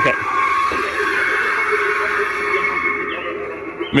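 Spirit Halloween Mr. Dark animatronic triggered by its motion sensor, playing its loud, steady recorded sound effect through its built-in speaker as it rises. The sound stops near the end.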